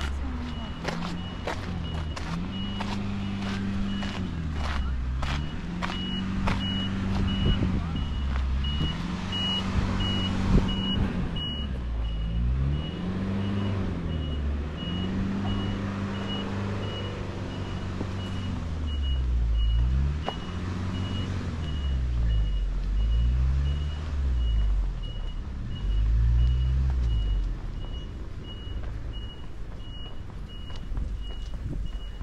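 A vehicle's reversing alarm sounding evenly spaced high beeps over a low engine sound that keeps rising and falling in pitch. Footsteps on the path are heard in the first seconds.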